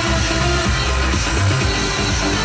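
Electronic dance music with a steady bass beat, playing from a dance radio station.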